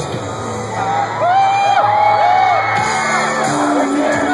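Live rock band playing, heard from within a stadium crowd: a held low note underneath, with sung vocal lines coming in louder about a second in.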